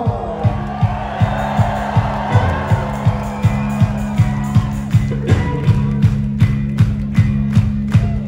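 Live rock band playing loud: a held low guitar and bass drone under a steady kick-drum beat of about two and a half beats a second, with cymbals coming in about five seconds in.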